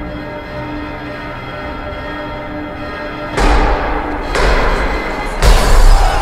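Sombre music with held notes. About halfway through a sudden loud, noisy burst with a deep thud cuts in, and a second one hits near the end.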